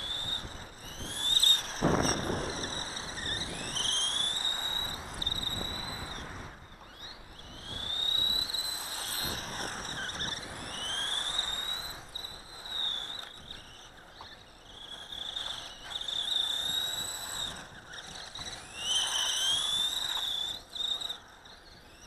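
A small 1/18-scale electric RC buggy (Dromida DB4.18) being driven on concrete: its motor gives a high whine that rises and falls again and again with the throttle, over the rasp of its tyres. There is a louder burst about two seconds in.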